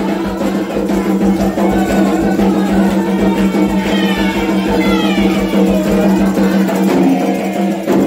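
Candomblé ritual music played without pause: atabaque hand drums and a metal bell keep a steady beat, with a held tone underneath.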